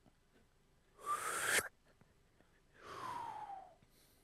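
Two breathy, whistling mouth noises made by a man imitating a glass cutter scoring a hole in glass: a short one about a second in that rises slightly and cuts off sharply, then a longer one near the end that slides down in pitch.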